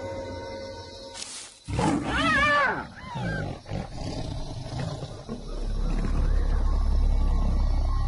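Lion attacking a hyena: a loud animal cry that rises and falls in pitch about two seconds in, followed by a few shorter calls, then a deep low rumble through the second half.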